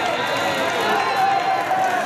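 Several voices calling out in long, drawn-out shouts that overlap, over crowd chatter.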